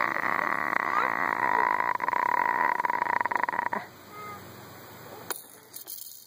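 Baby vocalizing in one long, buzzy, croaky sound that lasts about four seconds, then fades to a few faint coos. A few sharp clicks come near the end.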